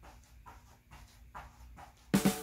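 Faint, quick puffs of breath, about two a second, from a man exerting himself doing fast mountain climbers on an exercise mat.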